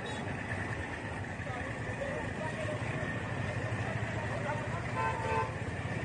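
Street traffic heard from a moving motorcycle, its engine running steadily under the traffic noise, with a short vehicle horn toot about five seconds in.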